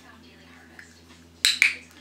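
A dog-training clicker pressed and released: two sharp clicks a fifth of a second apart, near the end, marking the dog's correct sit just before a treat is given.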